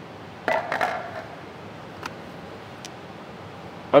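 Plastic end cap and filter element of a Bobcat E35 R2 mini excavator's engine air cleaner being handled by hand: a short plastic clatter about half a second in, then two faint clicks.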